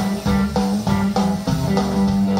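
Live band playing an instrumental passage: guitar and bass guitar in a steady, driving rhythm.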